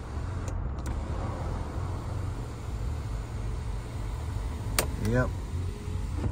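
Electric sunroof of a 2011 Mercedes C300 running, its motor driving the glass panel closed over the steady low hum of the idling car. There is a sharp click just before five seconds in.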